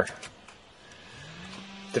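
A man's voice in a pause between words: quiet at first, then from about halfway a low, drawn-out hesitation sound, slightly rising then held, before speech resumes.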